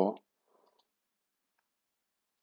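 A voice says one short Polish word, then near silence broken only by a few faint clicks.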